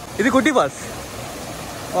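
Steady rush of water from a rocky stream and small waterfall. A person's voice comes briefly near the start.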